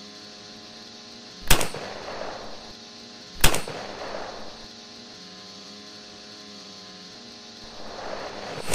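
Two gunshots from a long gun, about two seconds apart, over a snowmobile engine idling steadily.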